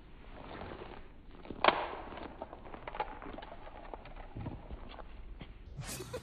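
A single sharp click about a second and a half in as a kick strikes the metal cap on a glass bottle, followed by a few faint small clicks and scuffs.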